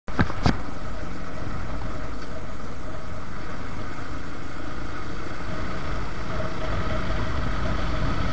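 Suzuki Gixxer motorcycle engine running steadily while riding at about 40 km/h, an even low rumble with no change in pace. Two short knocks come right at the start.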